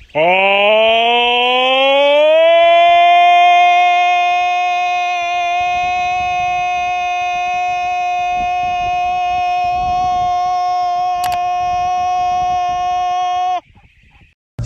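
A single long horn-like tone that rises in pitch over the first two seconds, then holds one steady pitch for about eleven seconds and cuts off suddenly near the end. A sharp click comes about eleven seconds in.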